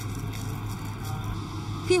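Soft background music in a pause between narrated lines, over a steady low hum, with a few faint held notes in the middle.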